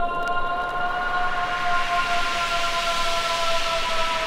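Beatless passage of an acid/hard trance track: a siren-like wail of several held tones that rise slightly and sink again, with a swelling and fading noise sweep in the middle.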